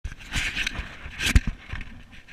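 Handling noise of an action camera: rustling of jacket fabric against the microphone, with two sharp knocks about a second and a half in.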